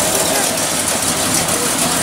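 A car engine idling steadily, a low even hum, with people talking in the background.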